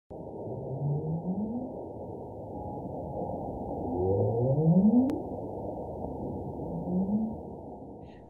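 Underwater recording of whale calls: three rising calls, each about a second long, over a steady hiss of sea noise.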